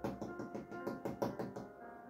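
A rapid, irregular run of sharp knocks or taps, about a dozen in under two seconds, stopping shortly before the end. Soft instrumental background music with long held notes plays under them.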